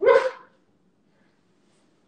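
A dog barks once, a single short loud bark right at the start.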